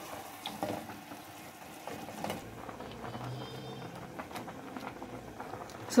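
A wooden spoon clicks and scrapes in a metal pan of minced meat for the first couple of seconds. Then a pot of spaghetti boils, the water bubbling steadily.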